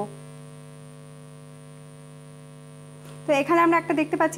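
Steady electrical hum in the recording, a low drone with a faint high whine above it. Speech resumes about three seconds in.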